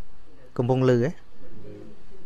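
A man's voice speaking into a microphone, with one loud drawn-out syllable whose pitch dips and rises about half a second in, and a softer sound near the end.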